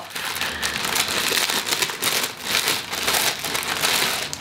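Crinkly packaging rustling and crackling continuously as it is handled, with many small crackles packed close together.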